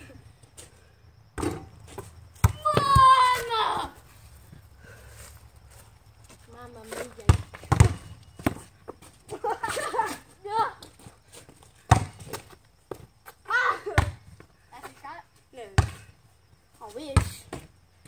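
A basketball bouncing, about ten sharp separate thuds spread out irregularly, amid children's voices and a high shout about three seconds in.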